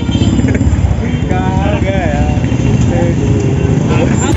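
Motorbike engine and road noise while riding, a steady low rumble, with voices calling out over it near the middle.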